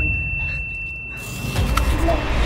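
Water sloshing and splashing in a tub as a face is plunged in to bite a floating apple, starting about halfway through and getting louder, over a thin steady high tone.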